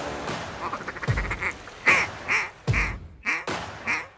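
A duck call blown in a run of about five quacks, the first the loudest and each one after it softer.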